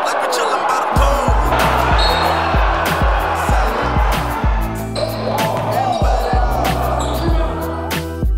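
Backing music with a heavy bass beat, about two hits a second, laid over basketball game audio.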